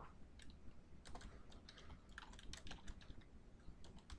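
Faint typing on a computer keyboard: quick, irregular key clicks as a search query is entered.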